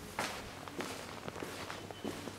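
Footsteps of a person walking across a room, a series of irregular steps with the sharpest one just after the start, over a low steady hum.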